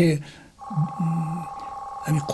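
A steady electronic tone of two pitches held together, starting about half a second in, under a man's voice.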